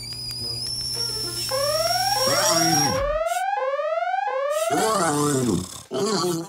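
Electronic synthesizer cartoon sound effects: a steady high whine, then a run of about five rising sweeps, each well under a second, followed by a few arched electronic tones near the end.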